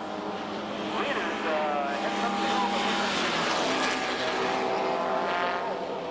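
Racing engine of a 1953 Fiat-Frua 1100, a small four-cylinder car, running hard as it passes on the track. Its pitch rises and falls, and it is loudest in the middle of the pass.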